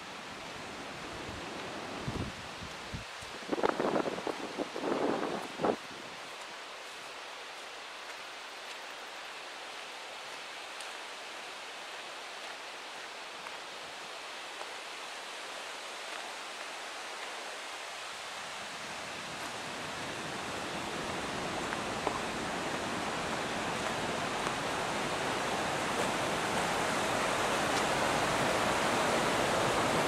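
Steady outdoor noise with a few brief scuffs about four to six seconds in, then a mountain stream running over rocks, growing steadily louder through the second half.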